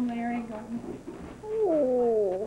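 A person's drawn-out vocal exclamations, like 'ooh': a short held note at the start, then a louder, longer note that falls in pitch from about one and a half seconds in.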